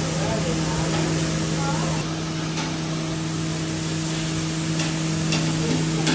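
Food sizzling on a large round flat-top griddle as cooks scrape and turn fried rice with metal spatulas, over a steady kitchen hum.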